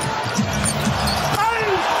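Basketball game court sound: a ball being dribbled on the hardwood under steady arena crowd noise, with a sneaker squeak about a second and a half in.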